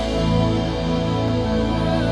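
Yamaha MODX8 synthesizer keyboard playing slow worship music in long, held chords.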